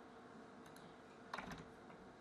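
Near silence broken by a brief cluster of faint computer mouse clicks about one and a half seconds in, as an item is picked from a dropdown list.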